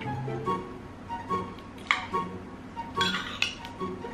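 Light background music, with a metal spoon clinking against a bowl a few times, sharply just before two seconds in and again around three seconds in.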